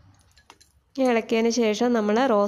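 A woman's voice speaking, starting about a second in, after a short quiet stretch with a few faint clicks.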